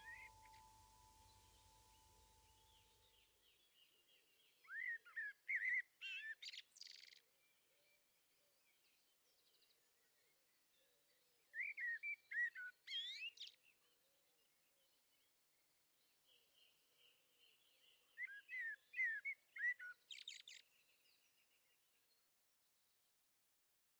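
Faint songbird singing three short phrases of quick chirps and whistled glides, about six seconds apart. The last notes of the song die away just before the first phrase.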